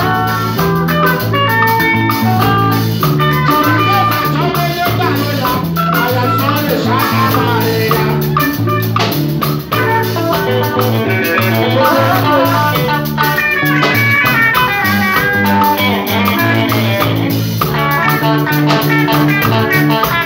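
Live band playing an upbeat dance groove: a bass guitar's walking line of short notes over congas and a drum kit, with electric guitar on top.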